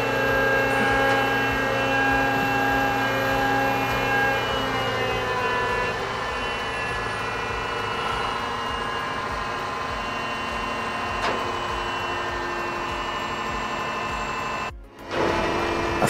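Heavy diesel engine of a mobile crane running steadily while the crane holds a suspended load, its hum shifting a little in pitch about five seconds in. The sound drops out briefly near the end.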